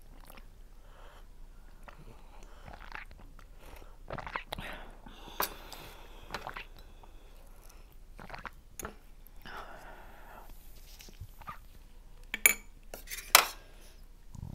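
Close-miked mouth sounds of people eating soft boiled potato-and-mushroom dumplings: irregular chewing and sipping. Near the end, two sharp clinks of metal cutlery against the dishes are the loudest sounds.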